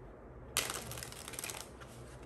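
A deck of tarot cards being riffle-shuffled: a sudden, rapid flutter of cards riffling together about half a second in, lasting about a second.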